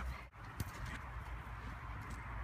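Outdoor field ambience: a steady low rumble with an even hiss and a few faint ticks, broken by one sharp click about half a second in.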